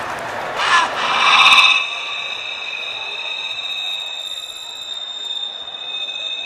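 A high electronic whine from the theatre's sound system, made of two steady high tones that come in about a second in and hold without a break. Just before it there is a short loud burst over the crowd noise.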